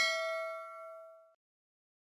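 Notification-bell 'ding' sound effect of a subscribe-button animation, struck just before and ringing out in a few clear tones, fading away about a second and a half in.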